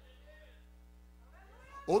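A short pause with only a faint, steady low hum, then a man's voice speaking into a microphone begins near the end.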